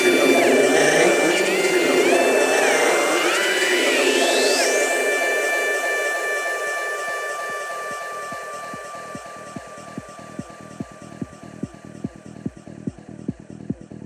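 Psytrance breakdown: dense layered synths with held tones and a rising pitch sweep about four seconds in, then the music thins and fades to sustained synth tones over a quiet, fast pulse.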